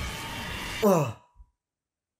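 Background music that stops abruptly a little under a second in, followed by a man's short 'oh' falling in pitch, then silence.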